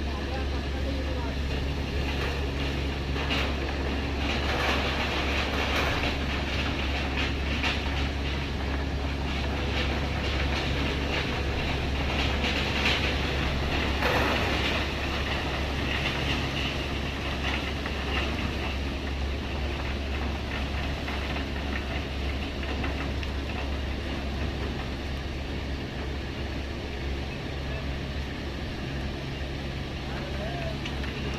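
Steady low drone of heavy machinery at a sugarcane truck-unloading platform, with bouts of rattling and clattering through the first half that are loudest about halfway through.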